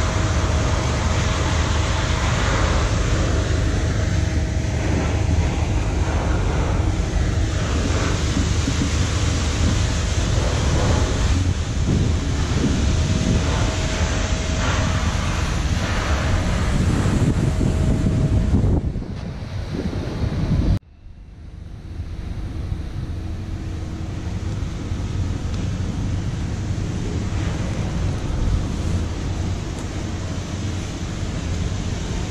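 Wind buffeting the camera's microphone, a steady noisy rumble with a faint hum under it. It drops out abruptly about two-thirds of the way through, then returns a little quieter.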